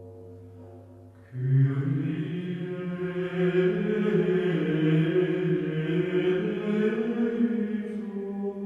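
Low voices chanting in slow, long-held notes, a plainchant-like line coming in suddenly about a second in. Before that a sustained ringing tone is dying away.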